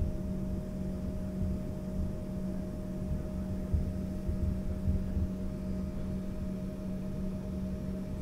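Embraer ERJ-135's rear-mounted Rolls-Royce AE 3007 turbofans running at taxi power, heard from inside the cabin: a steady hum with a constant whine over a low rumble.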